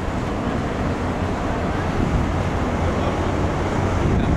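Wind on the microphone: a steady, low rushing noise with no distinct events.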